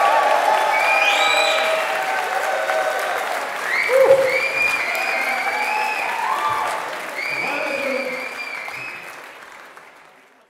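Audience applauding, loud and sustained, fading out near the end.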